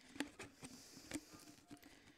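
A clear plastic tube of cinnamon sticks being handled as they are worked out of it: a few faint, irregular clicks and taps of the sticks against the plastic.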